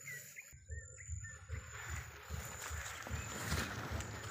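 Footsteps and rustling of leaves and grass as someone pushes through forest undergrowth, with irregular low thuds, growing busier after about two seconds. A few faint bird chirps come in the first second, over a thin steady high tone.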